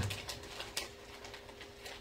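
A pause between spoken phrases: quiet room tone with a faint, steady hum.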